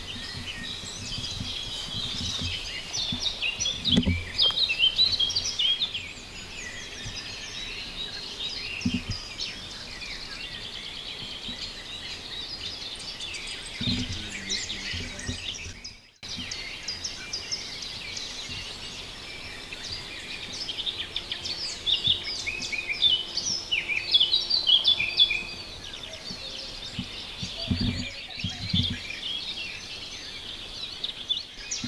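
A chorus of wild songbirds chirping and singing densely, broken off briefly about halfway through. Occasional low thumps sound under the birdsong.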